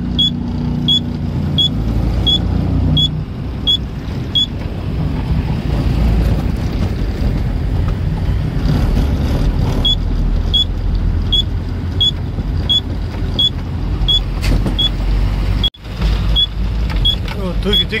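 A container lorry's diesel engine running as heard inside the cab while the truck creeps forward, its rumble growing fuller about two seconds in. A regular tick about one and a half times a second, the indicator relay, runs for the first few seconds and comes back for the last several; the sound drops out briefly near the end.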